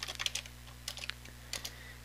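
Computer keyboard typing: a quick run of keystrokes, then a few scattered single keystrokes.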